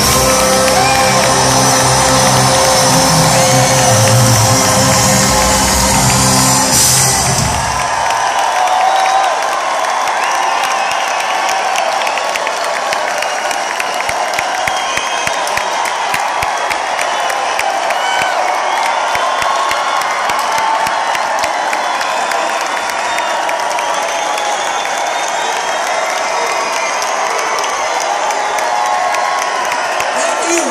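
A live rock band with piano plays the final bars of a song, ending about seven or eight seconds in. A large concert crowd then cheers and whoops for the rest of the time.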